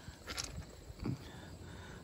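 Faint crunching of crushed-stone gravel under a person's weight as he moves on it, with a short scrape about half a second in and a smaller one about a second in.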